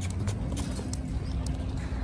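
Horse loping on a lunge line, its hooves thudding irregularly on soft arena dirt, over a low rumble.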